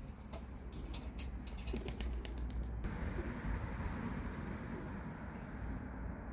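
Faint bird calls over a steady low rumble, with a run of light clicks through the first three seconds.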